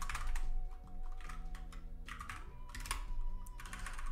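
Typing on a computer keyboard: an irregular run of keystrokes as a line of code is typed.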